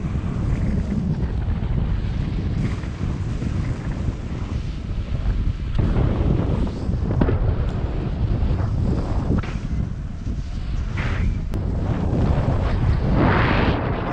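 Rushing airflow of a paraglider flight buffeting the action camera's microphone: a heavy low wind rumble that swells and eases in uneven gusts.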